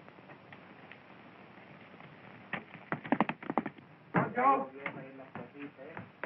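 Faint hiss of an old film soundtrack, then a second or so of rapid clattering knocks, followed by a man's short spoken outburst.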